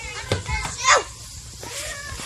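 A child's short high-pitched squeal about a second in, sweeping steeply down in pitch, over the voices of children playing, with a couple of knocks just before it.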